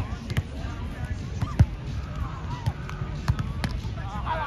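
A volleyball being struck several times by hands and forearms in a beach volleyball drill: sharp slaps of passes, sets and hits, the loudest about a second and a half in, with players' voices calling between contacts.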